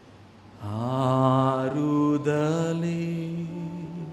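A man's voice intoning a phrase of prayer in long, held, slowly gliding notes. It starts about half a second in and dies away shortly before the end.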